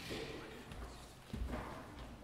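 Footsteps on a wooden church floor: two heavy steps about a second and a half apart, the second one deeper and louder.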